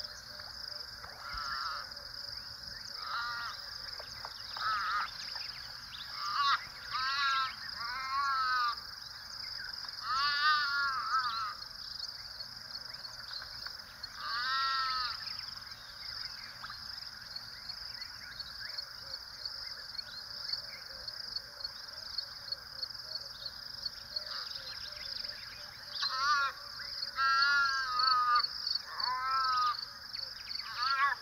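Repeated harsh animal calls in short bursts and series, clustered in a few bouts with a long gap in the middle, over a steady high-pitched hiss.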